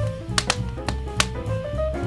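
Smooth jazz instrumental with a pulsing bass line and held chords, mixed with the sharp, irregular snaps of a crackling wood fire.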